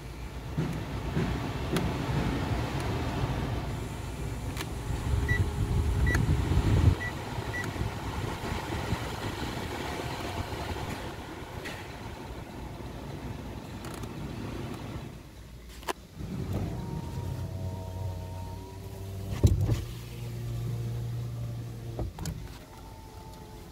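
Mitsubishi ASX cabin fan blowing as the climate-control knob is turned, growing louder and then cutting off suddenly about seven seconds in, with a few short electronic beeps just before. From about sixteen seconds, the electric window motor runs in two strokes as the power window is worked.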